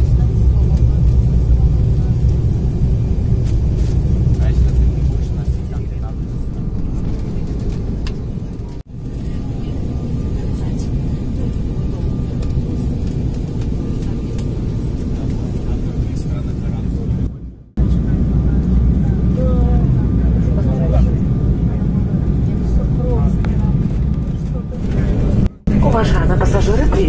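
Steady low rumble of an Embraer regional jet heard inside the passenger cabin during descent and the landing roll, broken by three abrupt cuts.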